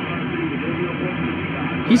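Received audio from an Icom IC-7300 HF transceiver on the 17-metre band: a steady, heavy band noise with nothing above the voice range, and a weak single-sideband voice from a distant station barely audible under it. The noise is city noise picked up by the 17-metre vertical doublet.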